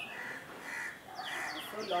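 Birds calling: a run of short, high, falling chirps, with two harsher, lower calls less than a second apart.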